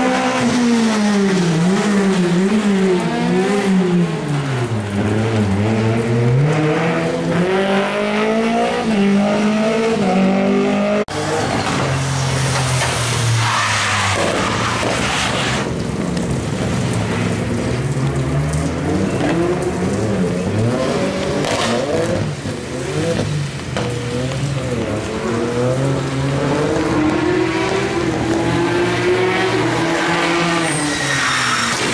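Rally car engines revving up and down through gear changes: a Peugeot 208 rally car, then, after a cut about eleven seconds in, a Ford Fiesta rally car. The engine note repeatedly drops low when slowing for corners and climbs again under acceleration, rising steadily near the end.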